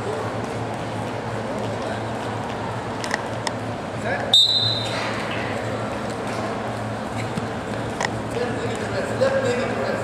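Gym ambience of spectators' and coaches' voices over a steady low hum, with a few knocks from the wrestlers on the mat. A short, sharp referee's whistle blast sounds a little over four seconds in.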